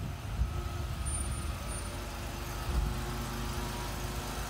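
A motor vehicle engine running steadily: a low rumble with a faint, even hum over it.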